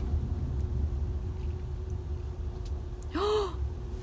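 Steady low road rumble inside a moving car. Near the end a woman gives a short 'ooh' that rises and falls in pitch.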